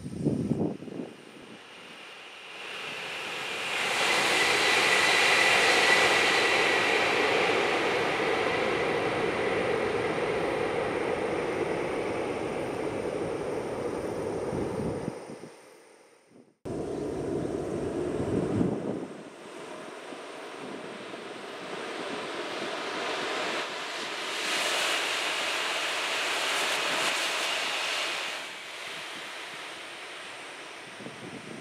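Shinkansen train passing at high speed: a rush of noise swells a few seconds in and fades away over about ten seconds. After a sudden break, another swell of train noise rises and falls near the end.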